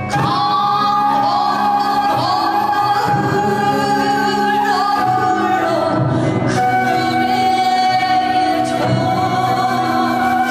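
A woman singing a Korean song in a traditional vocal style over a fusion gugak band with gayageum. She holds long notes with a wavering vibrato and slides up into each note, entering with a new phrase right at the start.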